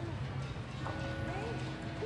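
Background voices of a crowd murmuring, with a faint steady tone sounding through the middle.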